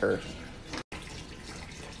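Faint, steady hiss of background noise with no clear event, broken by a brief dropout about a second in.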